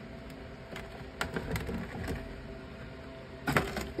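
Ceramic reptile hide being lifted off the substrate inside a glass terrarium: scattered light clicks and scrapes, with a louder clatter of knocks about three and a half seconds in.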